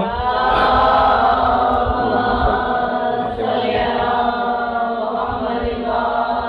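Many voices chanting together in unison in long, held tones, with a brief break about halfway through.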